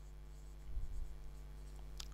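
Marker pen writing on a whiteboard: faint strokes and scratches, heard through a headset microphone over a steady low hum.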